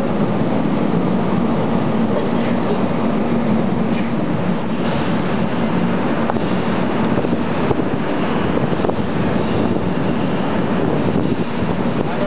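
Steady running noise from riding in an open-sided passenger cart, with a constant low hum under it.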